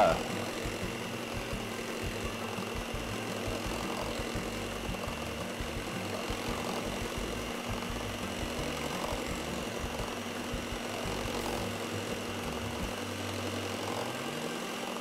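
Household stand mixer motor running steadily, its beaters whipping a cream cheese and heavy cream filling in a stainless steel bowl.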